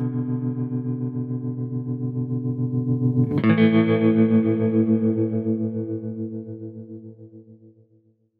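Outro music on electric guitar through effects: a held, pulsing chord, then a second chord struck about three and a half seconds in that rings out and fades away near the end.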